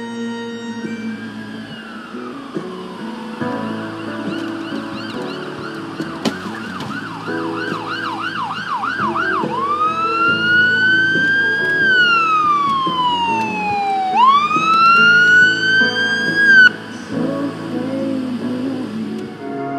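Electronic emergency-vehicle siren: a fast yelp of about three warbles a second, then a slow wail that rises, falls and rises again before cutting off suddenly. Background music runs underneath.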